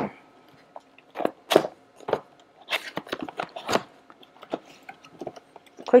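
Cardboard product box being opened by hand and a paper leaflet pulled out: a series of short, irregular crinkles and scrapes of cardboard and paper.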